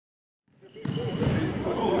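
Basketballs dribbling on a gym floor, with players' voices calling out. The sound fades in from silence about half a second in.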